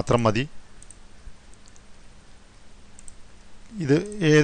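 A few faint computer mouse clicks during a pause in the narration, as layers are switched on and off in an image editor.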